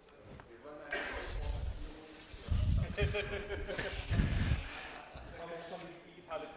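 Indistinct, low speech in a lecture hall, with two low thumps about two and a half and four seconds in.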